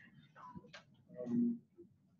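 A light click about midway, then a brief low murmur of a voice; otherwise quiet room tone.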